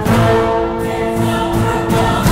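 Dramatic background score with choir-like voices holding sustained notes over an instrumental backing, entering suddenly at the start.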